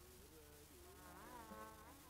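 Faint old recording of Hindustani classical music: a melody line gliding slowly up and down in pitch over a steady drone.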